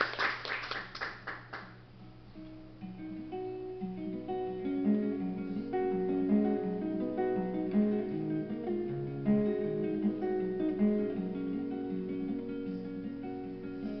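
Applause fades out over the first couple of seconds. Then a solo acoustic guitar plays a run of single plucked notes, over a faint steady hum.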